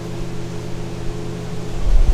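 Steady low mechanical hum holding several fixed pitches, with a low thump near the end.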